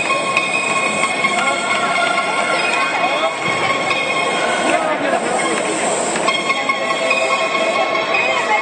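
Busy hall noise of crowd voices over steady whining tones from VEX competition robots' electric motors and gear trains as they drive. The pitch of the whine shifts a few times.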